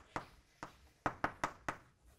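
Chalk tapping and striking on a blackboard while a formula is written: about six sharp, short taps at uneven intervals.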